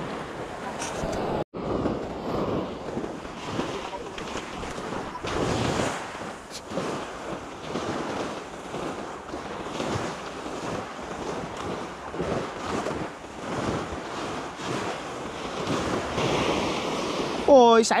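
Small waves breaking and washing up a sandy beach, surging and fading every few seconds, with wind buffeting the microphone.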